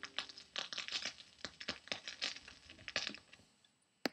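Stylus crackling and popping in the inner grooves of a 1957 45 rpm vinyl record, with irregular clicks, as the last notes of the song fade out in the first half-second. The crackle dies away near the end.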